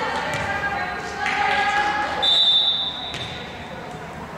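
Voices calling out in a reverberant gym, then about two seconds in a referee's whistle blows one steady high note for under a second, the signal for the next serve. After it, a volleyball bounces on the hardwood floor.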